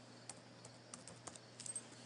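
Faint computer keyboard keystrokes: about ten irregular clicks, with a quick flurry near the end, over a low steady hum.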